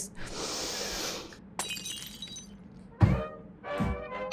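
A woman takes a long, deep breath into the microphone for about a second, a loud hiss, as a demonstration of meditation breathing. Music comes in about three seconds in.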